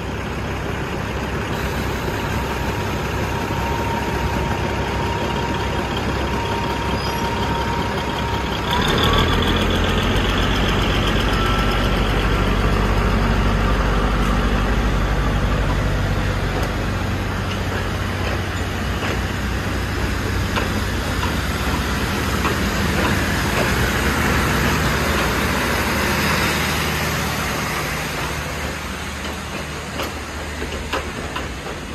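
A diesel passenger train pulls out of the station. A steady engine whine rises in pitch and the engine noise steps up into a loud, low drone about nine seconds in as the train gets under way. Its carriages then roll past with wheels running on the rails.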